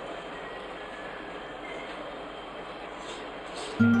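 Steady workshop background noise, an even mechanical hum-and-hiss; plucked guitar music starts suddenly just before the end and is the loudest sound.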